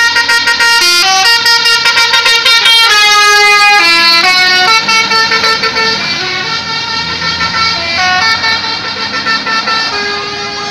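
Bus telolet basuri musical horn playing a tune: several horn notes that change in steps every fraction of a second, loud, growing fainter over the last few seconds.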